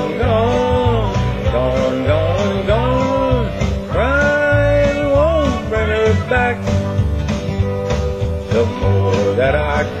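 A man singing a country song in long, drawn-out notes over a country backing track with guitar and a steady beat.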